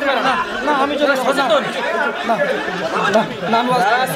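Only speech: several men talking over one another into a microphone, without pause.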